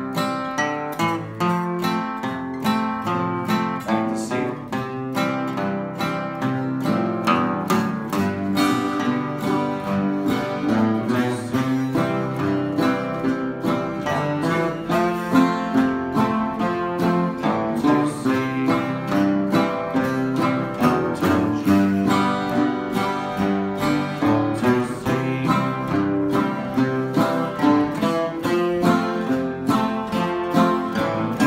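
Acoustic guitar played in a steady old-time rhythm, single bass notes alternating with strums, with two-note bass runs walking between C, F and G chords.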